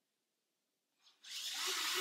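ACDelco ARD847 8-volt cordless pocket screwdriver starting just after a second in. Its motor whine builds quickly, then runs steadily as it drives a screw into a wooden post.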